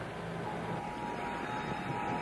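A steady rushing noise that fills the pause between narration, with a faint held tone coming in about half a second in.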